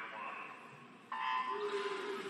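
Electronic start signal sounding about a second in, a sudden steady beep that sends the breaststroke swimmers off the blocks, with a rise of noise after it.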